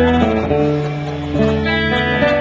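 A live band's electric guitar, acoustic-electric guitar and bass guitar play sustained chords together, changing chord about once a second.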